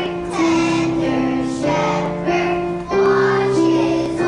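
Children's choir singing a song in unison, with held notes that step from one pitch to the next.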